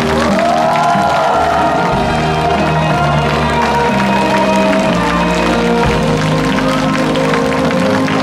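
Korean traditional percussion ensemble playing buk, janggu and sogo drums, with a melody of held, wavering notes over the beat and the audience clapping along.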